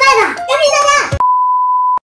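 A short high-pitched spoken phrase, then a single steady high beep tone, like an edit sound effect, that holds for under a second and cuts off abruptly.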